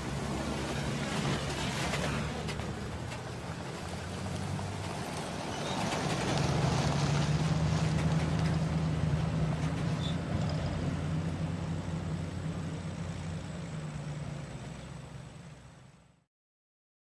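A vehicle engine running steadily with a low hum. It grows louder about six seconds in and fades out near the end.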